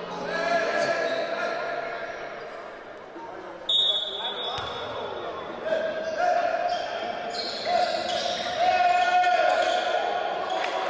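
Basketball game in a reverberant gym: a ball bouncing and voices calling out across the court, with a short, sharp referee's whistle blast about four seconds in.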